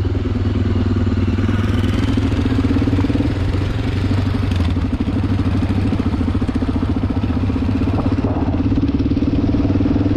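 Enduro motorcycle engine running steadily at low revs while the bike rolls slowly over a gravel track, heard from a camera mounted on the bike.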